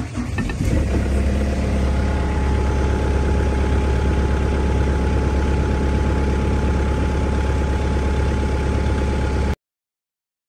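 The engine of a Vermeer D20x22 Series II directional drill starting on the key, catching within the first second and then idling steadily and loudly with a deep, even hum. The sound cuts off suddenly near the end.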